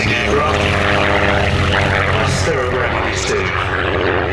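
Miles Magister's de Havilland Gipsy Major four-cylinder engine and propeller running steadily at low power as the aircraft taxis on the grass.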